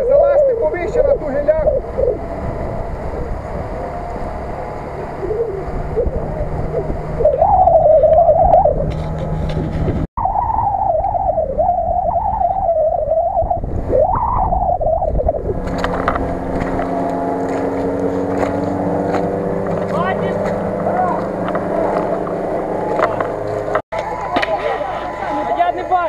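Off-road 4x4 engine revving up and down as the vehicle churns through a deep mud puddle. From about two-thirds of the way in, it holds steadier revs.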